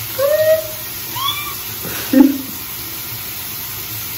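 A young woman's short, high-pitched nervous squeals, followed by a louder laugh-like burst about two seconds in, over a steady hiss.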